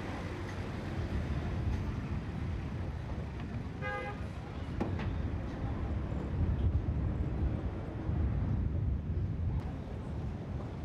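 Truck engine and road noise from a moving truck, a steady low rumble, with a short vehicle horn toot about four seconds in.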